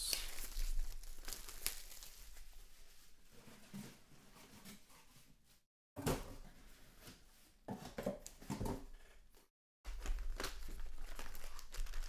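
Plastic shrink-wrap crinkling and tearing as it is stripped from a sealed trading-card hobby box, loudest in the first couple of seconds. It is followed by fainter handling of the cardboard box as it is turned over and its lid opened.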